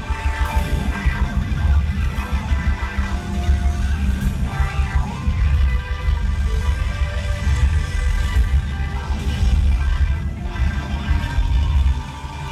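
A live rock band playing loud amplified music: electric guitars and bass guitar over a drum kit, with a heavy, pulsing low end.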